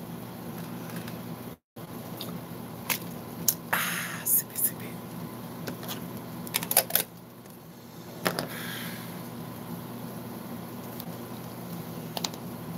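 Light clicks, knocks and short rustles of small objects and a cup being handled close to the microphone, over a steady low hum. The sound cuts out completely for a moment just before two seconds in.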